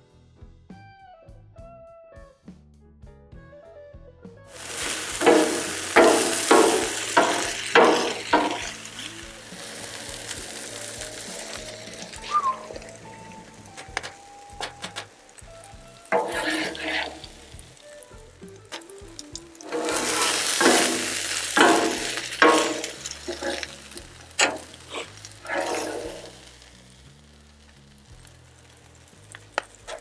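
Vegetables sizzling on a Blackstone flat-top griddle while metal spatulas scrape and clack on the steel, in loud bursts as the food is stirred and lifted.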